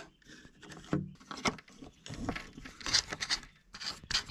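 Light, irregular rubbing and tapping of small plastic parts turned over in the hands: a 3D-printed hook with a Lego motor fitted into it.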